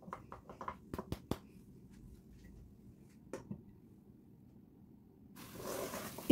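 Wooden spatula knocking and scraping against a nonstick pot as chopped brinjal is stirred: a quick run of faint clicks in the first second and a half, then one more about three seconds in.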